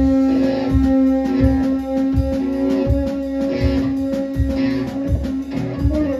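A live experimental noise-metal band playing: electric guitar and drum kit over a sustained droning note, with a steady low drum beat roughly every three-quarters of a second.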